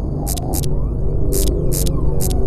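A low, throbbing drone of a horror-film score, broken by four short bursts of high static hiss.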